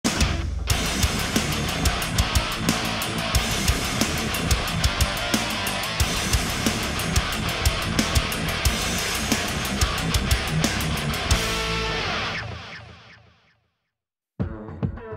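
Heavy metal music: a distorted seven-string electric guitar (LTD EC-407 through a Kemper amp) playing riffs over drums with a steady beat, fading out about a second and a half before the end.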